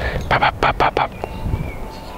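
Wind buffeting the camera's microphone: a low rumble throughout. A short burst of voice stands out in the first second.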